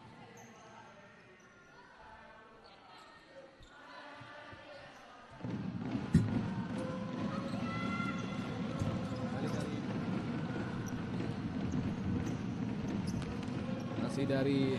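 Indoor futsal court sound: a futsal ball being kicked and bouncing on the hard court, with players' calls and crowd noise in a large echoing hall. It is low for the first five seconds, then comes up suddenly, with the sharpest kick about a second later.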